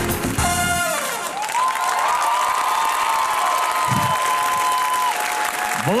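A dance song ends on its last notes about a second in, and a studio audience applauds and cheers. A long high note is held over the applause until about five seconds in.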